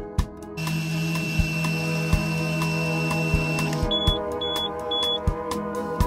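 A breath sample blown steadily into a Smart Start ignition interlock breathalyzer for about three seconds, with a steady high tone and a low hum held during the blow, followed by three short high beeps from the handset. Background music with a steady beat plays throughout.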